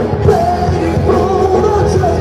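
A rock band playing live: an electric guitar holding long, wavering lead notes over bass and drums.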